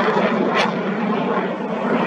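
Steady roar of a missile in flight, heard from the ground, with a short sharp click about half a second in.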